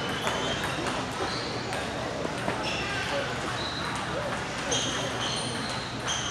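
Scattered sharp clicks of a celluloid table tennis ball on tables and paddles, about half a dozen, each ringing briefly, over a steady murmur of voices in a large hall.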